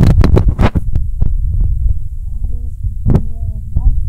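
Close handling noise: a hand and the camera rubbing and bumping against the recording microphone, giving a dense low rumble broken by sharp knocks, the strongest right at the start and about three seconds in.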